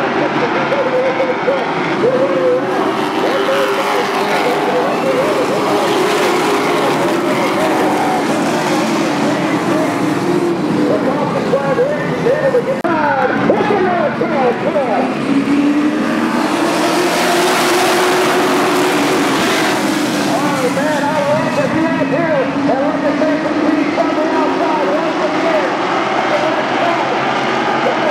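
A pack of race trucks lapping an oval: many engines running at once, their pitches rising and falling and overlapping as they pass. About halfway through, a brighter, rushing stretch comes as the pack goes by.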